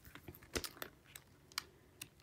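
Faint, light, irregular clicks and paper rustles from a sticker book being handled: its sheets are being flipped and held up.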